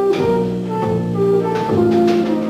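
Jazz combo of flute, piano, double bass and drums playing a C minor blues, with held melody notes over the band and a couple of drum or cymbal strikes.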